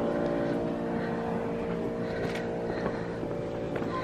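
Orchestra warming up on stage before a concert: several long, low notes held and overlapping, heard across a large concert hall.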